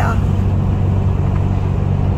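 A truck's engine and road noise heard from inside the cab while cruising on a highway: a steady, loud low drone.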